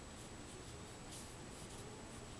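Faint swish of a small pure wolf-hair Chinese painting brush stroking across paper, with one slightly louder stroke about a second in.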